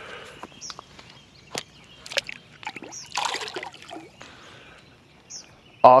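A bass released into shallow water: one brief splash about three seconds in, after a few sharp clicks and knocks from handling.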